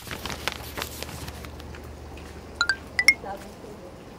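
A few light ringing clinks, like small hard objects tapped together, come in two pairs late on, over a low steady hum. Scattered soft clicks come before them.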